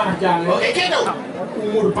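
Men speaking in stage dialogue, amplified and echoing slightly in a large open space.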